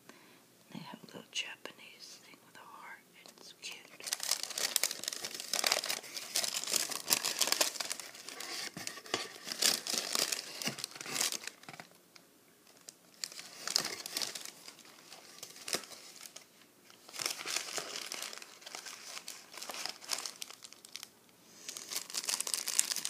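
Tissue paper and plastic snack wrappers crinkling and rustling as they are handled while a snack box is unpacked. The sound starts about four seconds in and comes in several bursts with short pauses between them.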